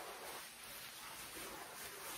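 Faint, steady rustle of a quilted puffer coat's fabric as it is pulled on and settled on the shoulders.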